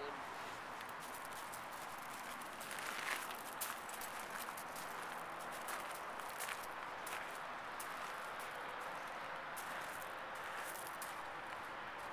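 Footsteps crunching on loose gravel, irregular short crunches and clicks, over a steady background hiss.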